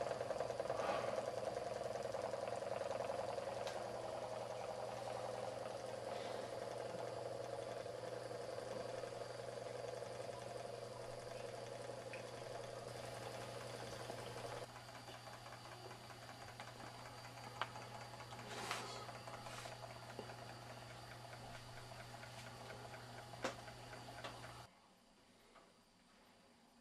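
Homemade hot-plate Stirling engine with copper end-cap cylinders running fast, a rapid steady whirring rattle of its crank and connecting rods over a low steady hum. It is running unbalanced, with its connecting rods loosely attached. The sound steps down in level about halfway and cuts off near the end.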